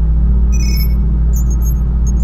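Synthesized electronic intro: a loud, steady deep bass drone with short high-pitched electronic blips and ticks scattered over it, including a brief cluster of beeping tones a little before the middle.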